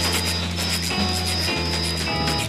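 Jazz-rock band playing live from an FM broadcast recording: drums with a dense wash of cymbal strokes over sustained low bass and Hammond organ notes that change about every half second to a second.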